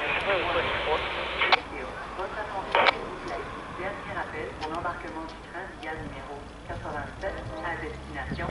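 Low rumble of an approaching VIA Rail diesel passenger train, growing slightly near the end, under faint talking and scanner-radio chatter, with two sharp knocks about one and a half and three seconds in.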